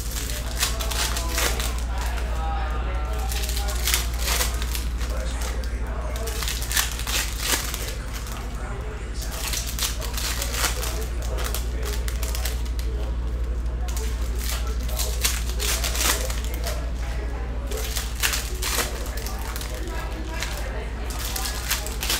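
Plastic wrapper of a Panini Donruss Optic basketball card pack crinkling and rustling in the hands as it is torn open. Cards are handled and shuffled between the crinkles, which come irregularly throughout.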